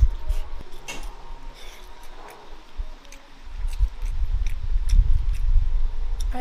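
Close-miked chewing of braised pork belly and rice: soft wet mouth sounds with a few light clicks, over a low rumble that grows louder from about halfway through.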